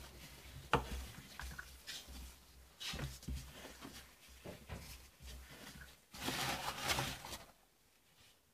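Pastry dough being worked by hand on a table: faint scattered light knocks and rubs, with a longer stretch of rubbing about six seconds in.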